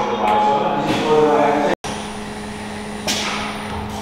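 Factory machinery hum, a steady low tone, with voices in the background; the sound drops out for a moment about halfway, and a short burst of noise comes in near the end.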